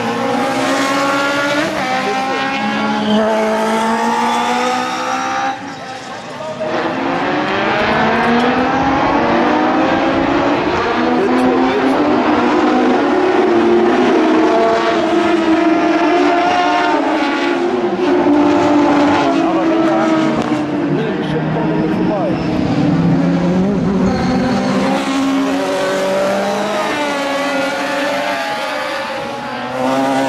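Several autocross race car engines racing together, their pitches rising and falling through revving and gear changes. The sound drops briefly about five and a half seconds in, then builds again.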